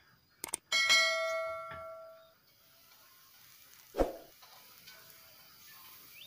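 Subscribe-button sound effect: two quick mouse clicks, then a bell ding that rings and fades over about a second and a half. A single short knock follows about four seconds in.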